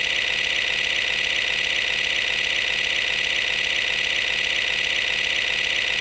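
A steady, unchanging electronic buzzing drone with a fast flutter, high in pitch.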